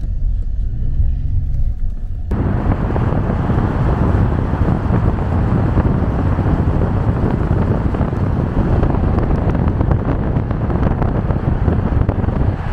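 Car driving, heard at first as a low road rumble inside the cabin. About two seconds in it jumps suddenly to a loud, steady rush of wind and tyre noise, as through an open side window while driving through a road tunnel.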